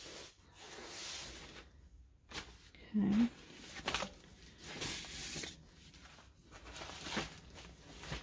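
Rolled diamond painting canvas in its plastic film being unrolled and handled: rustling and crinkling of plastic and canvas in several short bouts.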